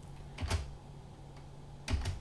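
Two sharp clicks at the computer, about a second and a half apart, over a low steady hum.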